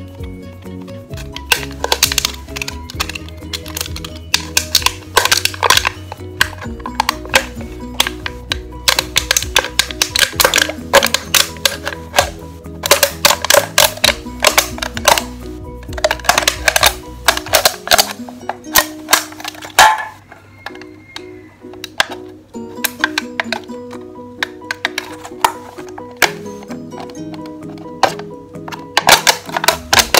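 A utility knife blade scratching and clicking as it is pressed into and cut through an empty aluminium soda can, in irregular runs of sharp clicks, over steady background music.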